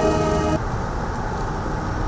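A brass band's held chord, played during a military salute, cuts off abruptly about half a second in. A steady low outdoor rumble follows.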